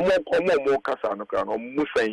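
A man speaking over a telephone line: narrow, phone-band speech on a radio call-in.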